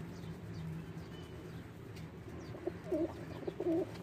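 Pigeon calls: a few short, low calls in the second half, over a steady low hum.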